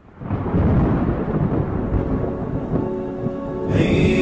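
Recorded thunderstorm, rolling thunder over heavy rain, fading in from silence, with a held vocal hum underneath. Higher voices join just before the end as the nasheed's intro starts.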